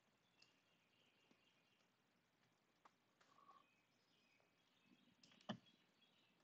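Near silence with a few faint computer mouse clicks, the loudest one about five and a half seconds in.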